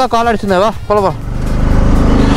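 A man's voice calling a wavering 'oh, oh' for about the first second, then a motorcycle engine running steadily under way, with wind noise.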